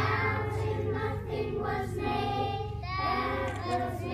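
A choir of young children singing together on a stage, the voices carrying with some room echo.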